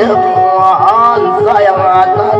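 A man sings a dayunday verse in a half-spoken, chanting style into a microphone over a steadily strummed acoustic guitar.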